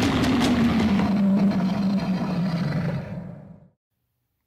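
Intro sound effect: a low rumble with a slowly falling tone that fades away to silence about three and a half seconds in.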